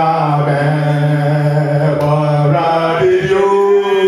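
A man singing a worship song unaccompanied, in long held notes, with a new phrase starting about three seconds in.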